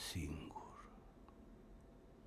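A man's short breathy vocal sound, a hiss then a brief low voiced sound lasting under a second, followed by faint room tone.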